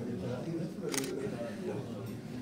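A single camera shutter click about a second in, over a low murmur of people talking.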